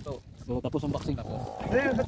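Men talking and laughing loudly.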